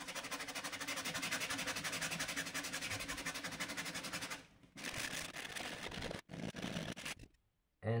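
Fine P240 sandpaper rubbed by hand in quick back-and-forth strokes on a wooden box lid, lifting carbon-paper transfer marks. The rubbing breaks off briefly about halfway, goes on in shorter bursts, and stops shortly before the end.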